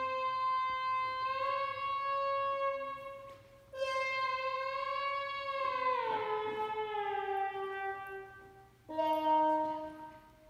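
Sustained, reedy synthesizer tones played from an iPad touchscreen. A held note breaks off, a second note slides smoothly down in pitch partway through, and a short, lower note sounds briefly near the end.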